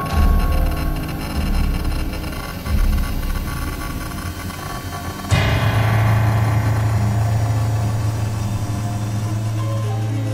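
Soundtrack music: a low rumble, then about five seconds in a sudden crash-like hit whose ringing fades, leaving a steady low tone.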